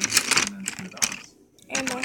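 Rapid clicking and rattling from a caddy of coloured pencils and paint bottles being handled, with one more click about a second in. A voice starts near the end.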